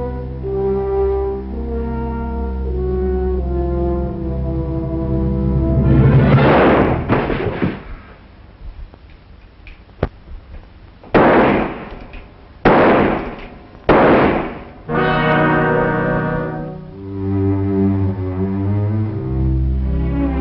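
Orchestral film score led by brass, playing held notes. In the middle the music gives way to a loud rushing swell and then three sudden loud bangs, each dying away within a second, before the brass score comes back.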